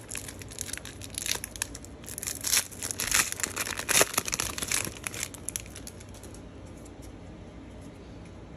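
Foil trading-card pack wrapper crinkling and tearing as it is pulled open by hand, in a run of sharp crackles. The crinkling dies down after about five or six seconds.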